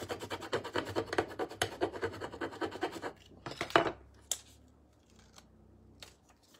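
Quick back-and-forth scratching, about eight to ten strokes a second, as a small décor transfer is rubbed down onto a surface. A few louder scrapes come a little after three seconds, then the sound trails off to faint room noise.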